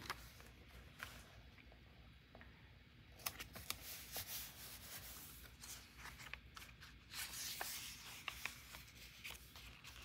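Faint paper handling: a large sticker pressed and smoothed onto a journal page, then a sticker-book page turned, heard as scattered soft rustles and small clicks.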